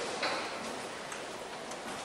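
A pause in speech: steady room hiss with a few faint ticks.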